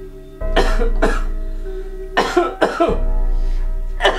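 A person coughing in short pairs, twice, over soft background music of held keyboard notes.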